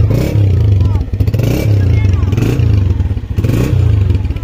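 Honda CG125 motorcycle's single-cylinder four-stroke engine running, its pitch rising and falling about once a second as the throttle is blipped.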